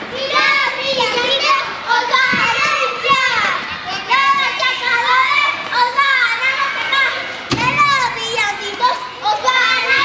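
A group of young children shouting, calling out and chattering all at once while they play.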